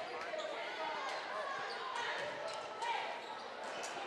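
Gymnasium crowd murmur with a basketball being dribbled on a hardwood court during play, a few faint thuds scattered through it.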